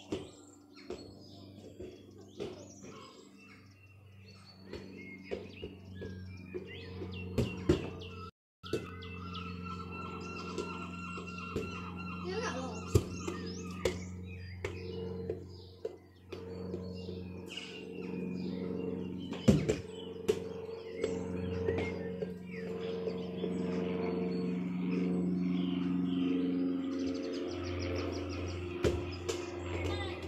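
A football being kicked and bouncing on a street: several sharp thuds scattered through, the loudest about eight, thirteen and nineteen seconds in, over a steady low hum.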